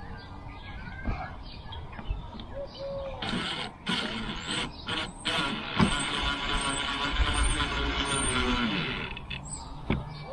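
Cordless drill/driver running with a steady whine for about three and a half seconds from just past halfway, driving a screw into a plastic rear bumper skirt. Brief knocks and clicks come before it.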